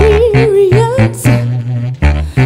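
A woman singing, holding a wavering note for about a second and then dropping to a lower held note. Under her, a tubax (a compact contrabass saxophone) plays short, repeated low bass notes.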